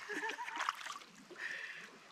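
Kayak paddle strokes splashing and dripping in river water, with a short voice-like sound near the start.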